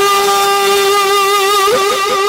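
A man's voice holding one long, steady note in a sung qaseeda recitation through a microphone and PA. Near the end the note gives way to a quick run of repeating echoes, about four a second, fading away.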